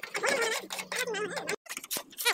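Hand paint scraper scraping old flaking paint off the wooden planks of a tractor trailer body in short scratchy strokes, with squeals that waver in pitch as the blade chatters on the wood.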